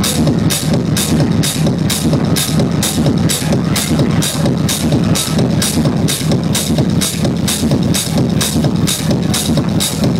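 Techno playing loud over a club sound system: a steady four-on-the-floor beat with a heavy bass line and crisp hi-hat hits about twice a second, heard from the dance floor.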